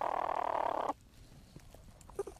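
A young platypus in its nesting burrow making a croaking, growl-like call about a second long that cuts off abruptly, followed by faint scattered scratching clicks.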